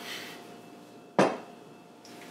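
A drinking glass set down on a hard surface: one sharp knock a little over a second in.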